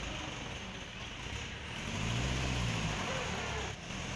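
Farm tractor engine idling steadily, a low rumble that swells briefly about halfway through.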